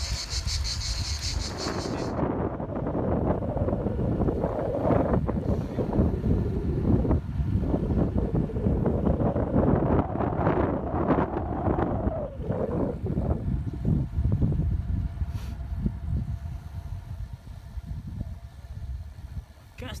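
Cicadas buzzing in a steady pulsing chorus that cuts off suddenly about two seconds in. After that, wind rushes and buffets over the microphone of a camera on a moving bicycle, rising and falling in gusts.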